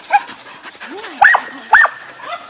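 Excited border collies barking: a short yip just after the start, then two loud, high barks about half a second apart in the second half.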